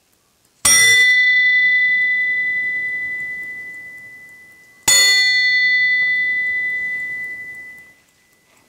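A five-inch miniature Liberty Bell cast in bell-metal bronze (78% copper, 22% tin) is struck twice, about four seconds apart. Each strike rings out with a clear, high tone that slowly dies away.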